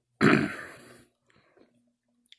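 A man clearing his throat once, fading out within about a second.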